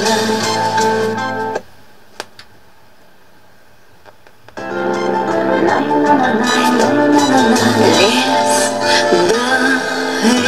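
A Belarus-59 tube radiogram's loudspeakers playing a music broadcast with a singing voice. About a second and a half in, the sound drops almost away to a faint background with a single click, and the music comes back about three seconds later.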